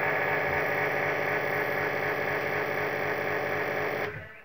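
CY brushless (BLDC) e-bike motor spun up on the throttle, giving a loud, steady buzzing drone with many tones that starts and stops abruptly. Under this trial phase-wire combination it runs in reverse with extra noise and vibration, the sign of a wrong wiring match between the motor and controller.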